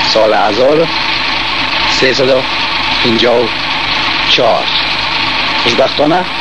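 A man speaking Dari in short phrases broken by pauses, over a steady hiss.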